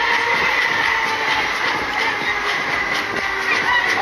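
Deca Dance fairground thrill ride running at speed: a steady mechanical rumble of the spinning gondolas and platform mixed with ride music.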